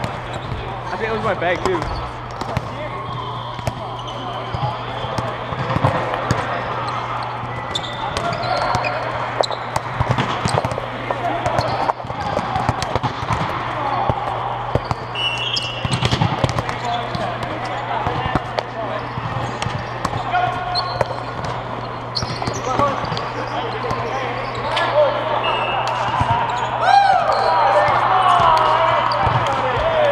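Volleyball hall ambience: many players' voices talking and calling, with volleyballs being hit and bouncing off the floor in scattered thumps over a steady low hum.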